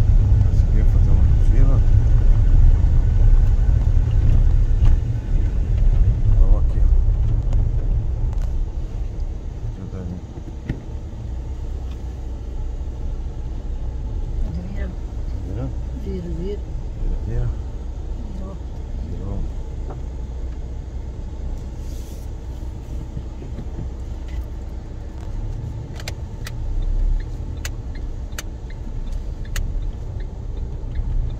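Car driving on a gravel dirt road, its engine and tyre rumble heard from inside the cabin. The rumble is loud for the first several seconds, then drops to a quieter, steady rumble about eight seconds in.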